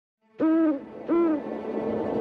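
An owl hooting twice: two short, clear hoots a little over half a second apart, each dipping slightly in pitch at its end.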